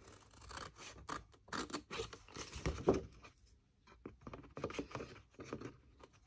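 Fiskars scissors snipping through stiff cardstock in a run of short, irregular cuts, with a brief pause a little past halfway.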